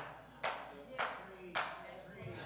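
Three faint hand claps about half a second apart.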